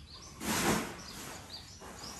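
Faint bird chirps over steady outdoor background noise, with a short rush of noise about half a second in.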